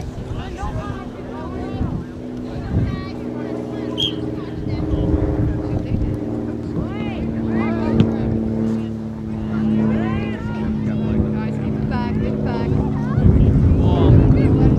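Youth soccer players and sideline spectators calling and shouting at a distance, over a steady motor drone. A louder low rumble comes in near the end.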